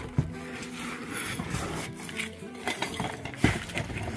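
Background music with the clinks and knocks of broken concrete blocks and rubble being shifted by hand, a sharp knock just after the start and another about three and a half seconds in.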